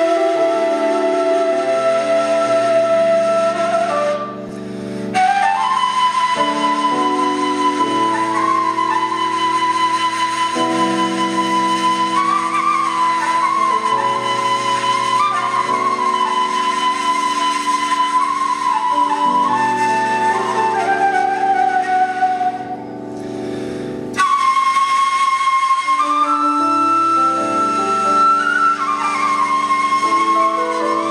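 Bulgarian kaval playing a flowing folk melody over sustained low accompanying chords, with two short breaks about 4 and 23 seconds in.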